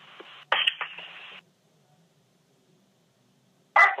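Telephone-line hiss with a short burst of sound about half a second in, then the line drops to dead silence for about two seconds while the next caller is being connected.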